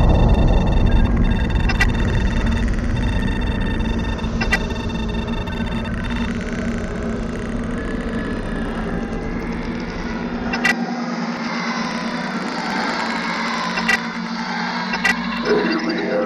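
A low, heavy rumble under a steady hum, with thin high electronic tones in the first few seconds and a few sharp clicks; the rumble drops away about ten seconds in, leaving the hum.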